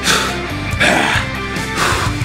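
Background music with a short, sharp exhaled breath about once a second, in time with repetitions of a barbell exercise.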